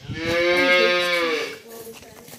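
A cow mooing once: a single long call of about a second and a half, held at a steady pitch.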